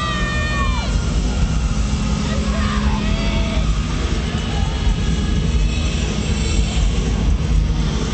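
Arena crowd noise: voices and shouts over a steady low rumble. A long, high-pitched yell trails off, dropping in pitch, about a second in.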